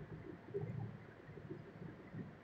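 A bird cooing, low and faint.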